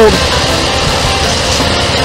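Steady outdoor noise with an uneven low rumble: wind on the microphone over road traffic.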